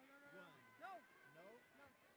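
Near silence with faint, distant voices talking.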